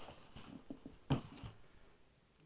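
Rustling and handling of a thin white packing sheet, with several soft knocks and one louder thump about a second in.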